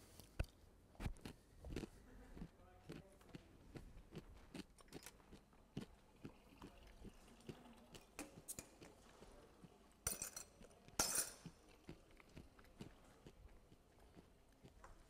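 Quiet room noise in a large hall: scattered small clicks and knocks with faint voices in the background, and two louder, short bursts of noise about ten and eleven seconds in.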